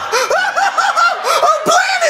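A person laughing in a quick run of short, high-pitched 'heh-heh' pulses, about six a second.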